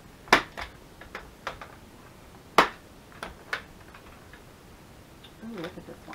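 A handful of sharp clicks and taps of small hard craft items being handled, two of them loud, about a third of a second in and about two and a half seconds in, with smaller ones between; a brief low murmur of a voice near the end.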